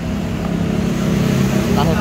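A motor vehicle engine running with a steady low hum. A brief voice comes in near the end.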